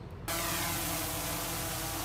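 DJI Mavic 3 drone's propellers buzzing in flight: a steady hum of several flat tones that starts suddenly about a quarter second in.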